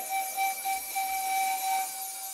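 Live mor lam band's instrumental intro: a wind-instrument melody holding one long high note, after a short run of moving notes just before.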